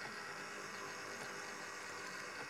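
Faint steady whirr of a stand mixer running at low speed, mixing dough while milk is added.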